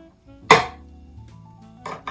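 Metal paint can lid being pried open with a paint-can opener key: a sharp metallic clink about half a second in, and a smaller one near the end.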